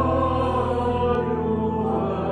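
Organ music: sustained chords held steady, with a low bass note that drops out a little after a second in.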